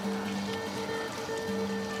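Background music: a few soft held notes with a gentle repeating higher note.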